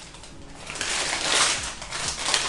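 Burger's paper wrapping crinkling and rustling as it is handled and opened, building up from about half a second in.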